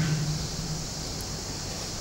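A pause in speech: a steady, even hiss of room tone, with the last word fading out in the first moments.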